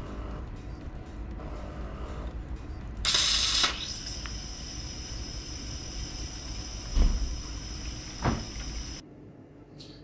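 Automatic coffee machine running its milk-system rinse: a steady pump hum, a loud rush of hissing steam and water about three seconds in, then a steady high hiss with two knocks, all cutting off suddenly about a second before the end.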